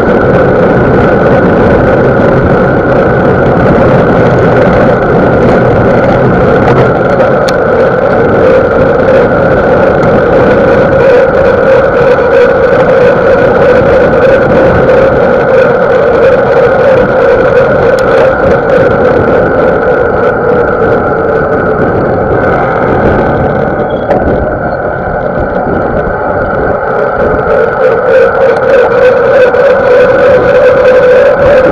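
Steady, loud roar of wind and rolling noise picked up by an action camera's microphone on a moving mountain bike, dipping briefly about three-quarters of the way through.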